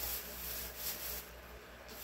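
Faint rustling and rubbing, in several short soft bursts.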